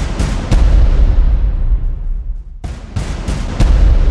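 A series of loud, sharp bangs with a deep rumble under them, in two clusters: three close together in the first half-second, then four more in the second half after a brief lull.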